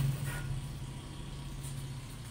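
A steady low hum, with a faint click about half a second in.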